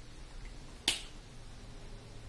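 A single sharp click about a second in: a lipstick cap snapping shut onto its tube.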